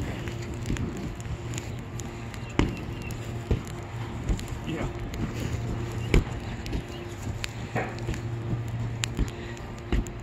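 A burning old soccer ball being kicked around on grass: a handful of sharp knocks, the loudest about six seconds in, over a steady low hum, with voices now and then.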